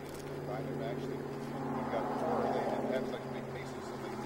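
A steady low mechanical drone of several held tones, swelling a little in the middle, with a man talking over it.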